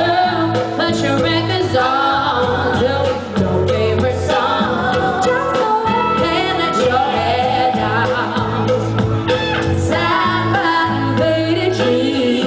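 Female singer performing live with a band, her amplified voice sliding up and down through wavering runs over a steady bass line.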